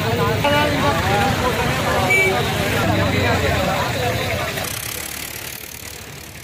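A group of people talking, with road traffic noise underneath; the sound fades out over the last two seconds.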